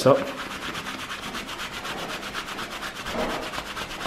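A hand rubbing fast back and forth on the chest of a hoodie, using friction to warm the fabric: an even run of quick brushing strokes that stops just after the end.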